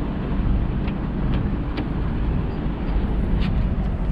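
A heavy vehicle's engine idling steadily with a low rumble, with a few faint light clicks over it.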